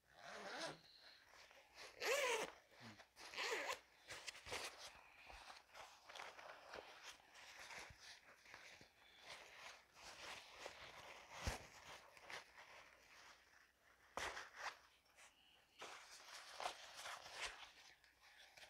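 Zipper on a thin-fabric backpack cooler being pulled in a series of short scratchy runs, with the fabric rustling as the bag is handled between them.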